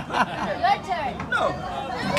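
Several people chatting and laughing, voices overlapping.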